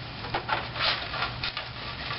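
A paper towel rubbing over a plastic water cooler top in a few short wiping strokes, with light handling of the plastic.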